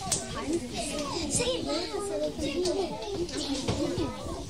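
A group of children talking and calling out at once, many high voices overlapping into steady chatter.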